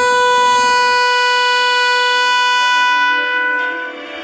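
Trumpet holding one long note of a hymn melody for about three and a half seconds, fading away near the end.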